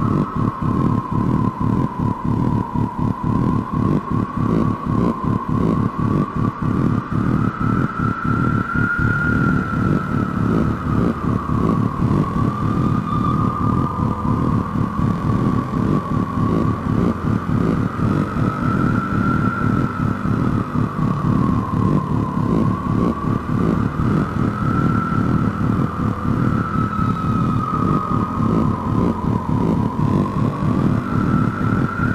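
Hardware-synthesizer music: a fast, pulsing low drone under a single high sustained tone that slowly wavers up and down in pitch.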